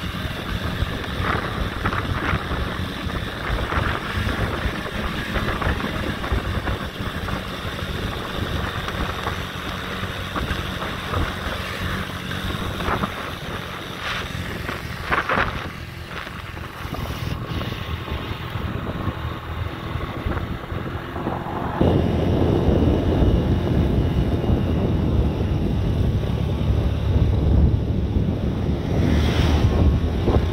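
Motorbike engine running while riding, mixed with wind buffeting the microphone. The rush gets clearly louder and heavier about two-thirds of the way through.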